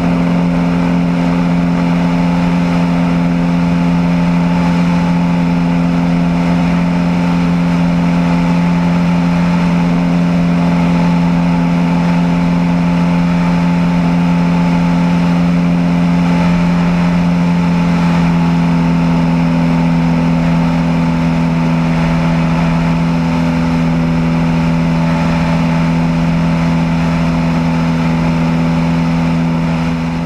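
Cessna 172 Hawk XP's six-cylinder Continental IO-360 engine and propeller at full power through takeoff and the initial climb: a loud, steady drone with a strong low hum that holds the same pitch throughout.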